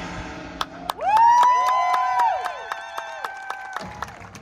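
A high school marching band playing a quieter passage of its show. About a second in, sustained chord tones slide up into pitch and hold, some falling away partway through and the rest near the end, over steady light ticks from the percussion.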